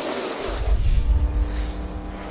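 NASCAR stock cars racing past, then about half a second in a deep bass boom under a held chord of steady tones: a broadcast transition sting.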